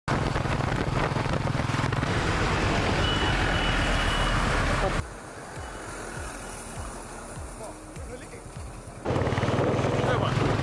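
Motorcycle engine running steadily at road speed, with wind rushing over the onboard microphone. About halfway through, the sound cuts abruptly to a much quieter stretch where a bus is going round a hairpin bend. The loud engine-and-wind sound returns near the end.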